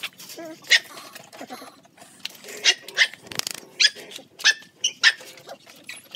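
Labrador puppies yelping: about seven short, high-pitched cries spread over a few seconds.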